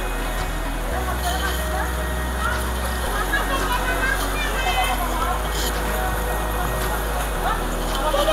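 Indistinct chatter of several people and children, scattered short voices over a steady background noise.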